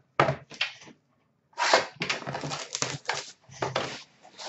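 A cardboard card box being handled and slid on a glass counter, rustling and scraping in several bursts, the longest in the middle.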